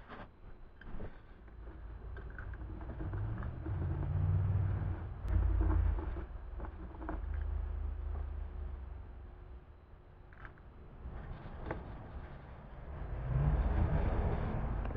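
A low rumble like a passing motor vehicle swells over a few seconds and fades away, with a few light taps from a brush and bowl.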